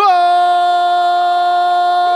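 A sports commentator's long, drawn-out goal cry, "Gooool": one loud shouted note held on a single steady pitch, hailing a goal just scored.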